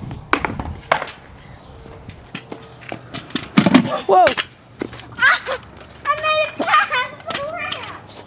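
Skateboard knocking and clacking on a concrete driveway, with several sharp knocks in the first second, then children's voices and a shout of "whoa" in the middle.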